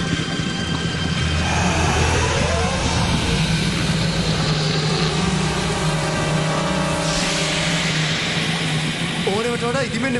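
Dramatic soundtrack score: a low steady drone with higher held tones over it, and a swelling whoosh about seven seconds in. A voice starts near the end.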